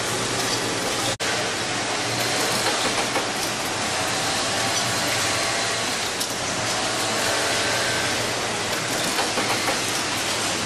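Steady mechanical din of machinery running on a garment factory floor, a dense even noise with faint hums. A brief dropout about a second in breaks it.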